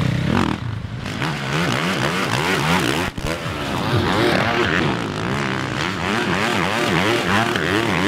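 Motocross bikes on a dirt track, their engines revving up and down again and again as the riders work the throttle over the jumps. The sound breaks off briefly about three seconds in.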